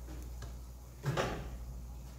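Kitchen handling sounds: a faint tap, then a short clatter about a second in as a wooden spatula and dishes are moved on the counter, over a steady low hum.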